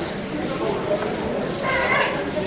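Indistinct chatter of a seated crowd in a church, with one higher voice standing out near the end.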